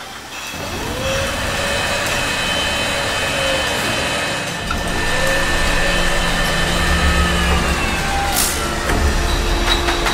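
Automated bottle-handling machinery in a brewery bottling hall running with a steady whine of held tones that slowly glide in pitch over a low rumble, which grows heavier about halfway through. A short hiss comes near the end.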